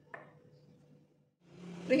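A kitchen knife scoring soft bread dough: one short, soft cutting sound just after the start, over faint room tone. A woman's voice begins near the end.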